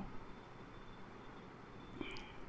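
Faint steady hiss: room tone and microphone noise, with no distinct sound events.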